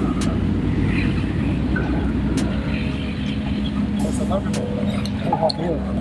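Steady low rumble of city street traffic, with people talking in the background that grows clearer near the end, and a few short clicks.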